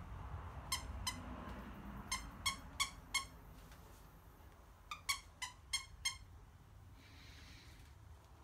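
A purple plush squeaky toy squeaked in quick short squeaks, in two runs of about five or six.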